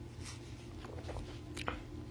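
Faint gulping and mouth sounds of a man drinking from a drink pouch, with a few small clicks, the clearest near the end, over a low steady room hum.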